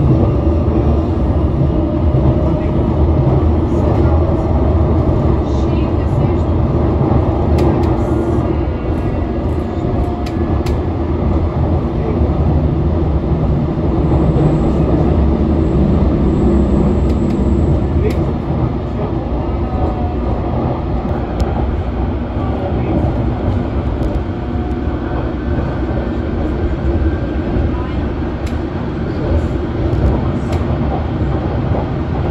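London Underground District line train running at speed, heard from inside the carriage: a steady rumble of wheels on rail and running gear, a little quieter in the second half.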